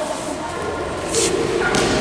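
Children's voices and shouts, echoing in a large indoor court, with a short hiss about a second in.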